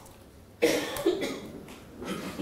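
A person coughing: one short, sudden burst a little over half a second in, then fading.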